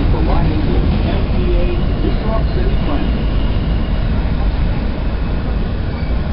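Interior rumble and running noise of a New York City subway car as the Q train slows along a station platform, with a faint high steady tone in the middle.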